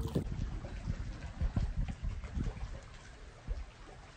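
Wind blowing across the microphone in uneven low gusts, easing off near the end.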